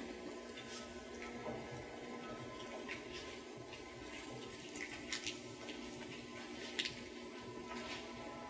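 Faint steady hiss of an old television soundtrack, with a few soft ticks scattered through it.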